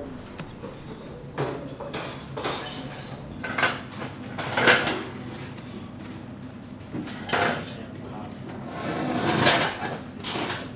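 Indistinct voices over a steady low hum, with a few short knocks and rustles. Near the end a longer scrape as a wrought-iron chair is pulled out from a table.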